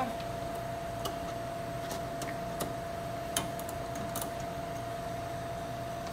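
Refrigeration condensing unit running with a steady hum, under a few light, scattered clicks as the suction service valve stem is turned to its back seat.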